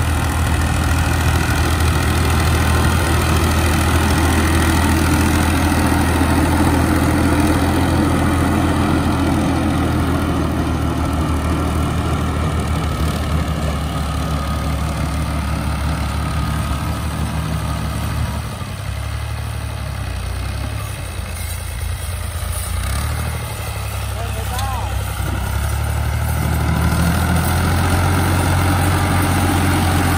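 A farm tractor's diesel engine running steadily under load while driving a rotavator that churns through dry soil. It eases off for several seconds about two-thirds of the way through, then comes back up near the end.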